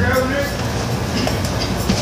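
Steady low rumbling background noise with no distinct events, at the level it holds between the words.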